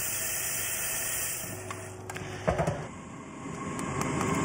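Low kitchen background: a steady hiss, then a few soft knocks and clinks of kitchenware about two and a half seconds in.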